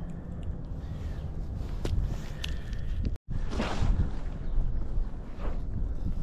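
Footsteps crunching on snow-covered ice, with handling rustle over a low rumble. The sound cuts out for a moment about three seconds in.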